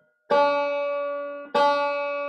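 A 5-string banjo's open first (D) string plucked twice, about a second and a quarter apart; each note rings on and slowly fades. The string has been detuned well flat so it can be tuned back up to D.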